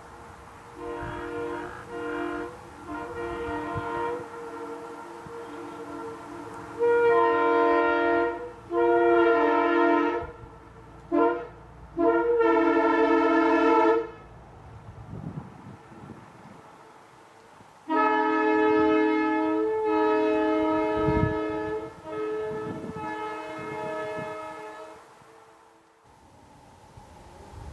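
Nathan M3 three-chime air horn sounding a chord. A few soft short toots come first, then loud blasts in a long, long, short, long pattern, the grade-crossing signal. After a pause there is one long blast that fades out near the end.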